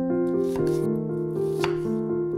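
Background music with a gentle, sustained melody, over three sharp knife strokes on a cutting board.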